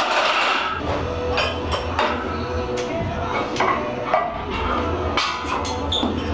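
Music playing from a radio, steady and continuous.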